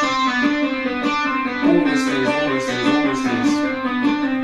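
Electric guitar played with the fretting hand alone, hammer-ons and pull-offs in an even run of three notes to each beat, a steady stream of quick notes.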